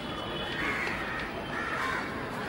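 Crows cawing among the trees: two harsh calls, one about half a second in and one near the end, over a steady background hum of outdoor noise.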